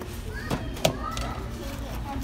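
Shop background of distant voices, with a child's high voice gliding up and down twice. Two sharp clacks come about half a second in and just under a second in, the second one louder.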